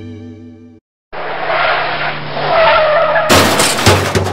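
A guitar chord rings and cuts off. Then comes a car-skid sound effect, tyres squealing, and about three seconds in a loud, sudden crash.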